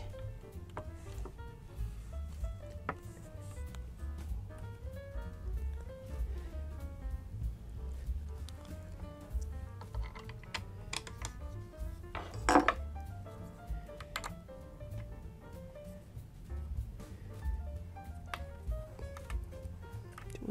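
Quiet background music under scattered light metallic clicks and clinks from a JCB bolt being threaded by hand into the spinning wheel stem's threaded insert, with tools handled on the table. The sharpest click comes about twelve seconds in.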